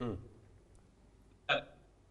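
A man's voice making two short vocal sounds, brief interjections rather than full words: one sliding down in pitch at the start and a clipped one about a second and a half in, with quiet room tone between.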